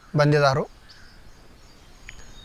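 A man's voice says one short word, then a pause holding only faint outdoor background noise with a few faint, thin, high bird chirps.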